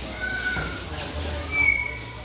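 Boxers' shoes squeaking on the ring canvas as they move while sparring: two short high squeaks, the second one, near the end, louder.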